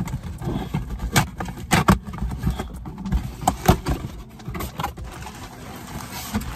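A cardboard shipping box and its plastic packaging being opened by hand: irregular crackling and tearing with a handful of sharp clicks and knocks, clustered about a second in and again a little past the middle.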